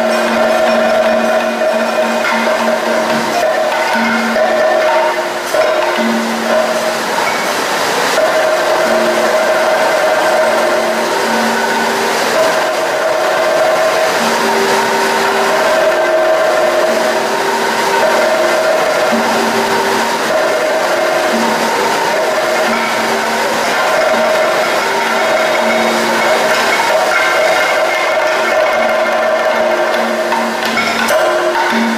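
Kathakali music: vocalists singing a slow melody in long held notes that change pitch every second or two, over steady percussion accompaniment.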